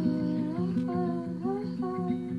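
Acoustic guitar played in a steady repeating picked pattern, with a woman's wordless vocal melody over it that glides up and down in pitch.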